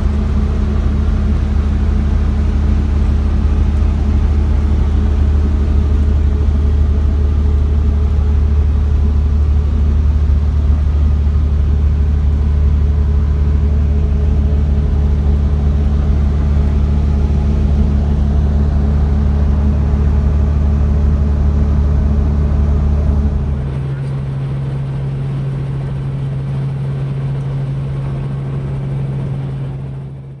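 A loud, steady low motor hum. About 23 seconds in it shifts abruptly to a quieter, higher single-pitched hum, which fades out at the end.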